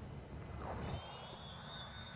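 Faint jet aircraft noise, a low steady rush with a thin high whine coming in about a second in.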